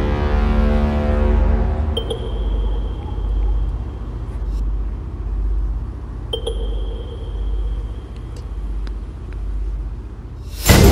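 Dark film-score sound design: the ringing tail of a booming hit dies away over the first two seconds, leaving a low rumbling drone that swells and fades about once a second. Two sharp, high ringing accents land about four seconds apart.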